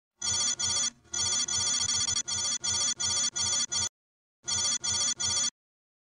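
Electronic ringtone-like beeping: short pulses of one steady, buzzy tone, about three a second, stopping just before four seconds in, then three more pulses.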